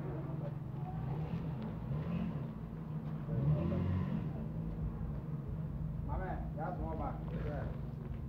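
Engine of a Kantanka three-wheeled limousine trike running as it pulls away slowly, its pitch rising and falling a few times in the middle. Voices talk near the end.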